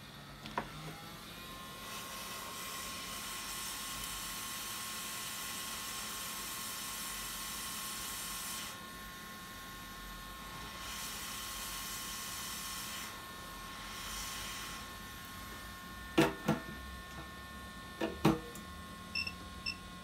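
Hot air rework station blowing with a steady hiss and a thin whine, heating a chip to desolder it from a phone logic board. The airflow stops around nine seconds in and resumes for a few seconds, and a few sharp taps follow near the end.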